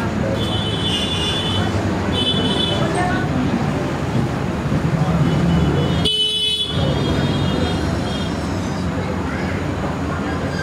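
Indistinct voices over a steady low rumble, with short high-pitched tones about half a second in, about two seconds in, and again around six seconds in.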